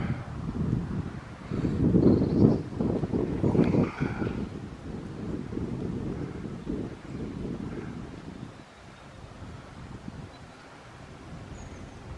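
Gusty wind buffeting the camera microphone as a low rumble, strongest a couple of seconds in and easing off in the second half.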